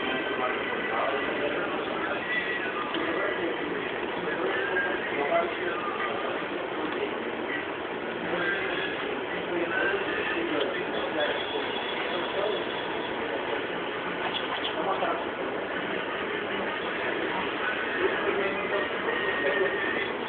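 Indistinct chatter of several voices, with no clear words standing out.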